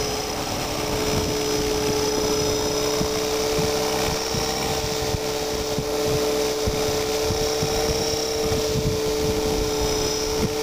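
Align T-Rex 500 electric RC helicopter flying low, its motor and rotors giving a steady, even-pitched whine over an uneven low rumble.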